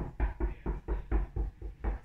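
Handling noise as a quilt is moved about close to the microphone: a quick, uneven run of soft thumps and rustles, about five or six a second.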